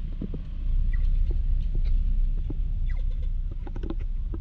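City street ambience: a steady low rumble with scattered short clicks and a few brief high chirps.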